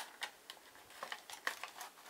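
Plastic mounting bracket being slid off the back of a HeathKit Smoke Sentinel 30-77L smoke detector: several light clicks and scrapes of plastic on plastic.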